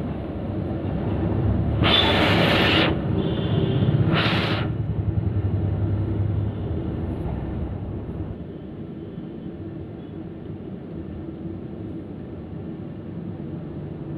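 Hot oil bubbling and sizzling in a large iron kadai as food deep-fries, over a steady low rumble. Two short, louder hissing bursts come about two and four seconds in, after which the sound settles quieter.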